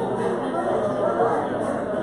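Indistinct chatter of many people talking at once in a large room as a congregation greets one another.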